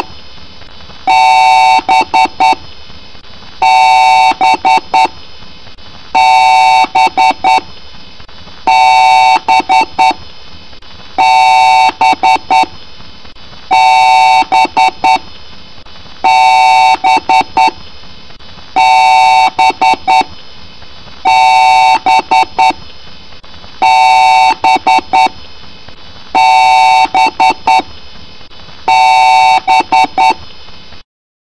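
PC BIOS power-on beep code from the computer's speaker, heavily pitch-shifted and distorted: one long beep followed by a few quick short beeps, repeating loudly about every two and a half seconds.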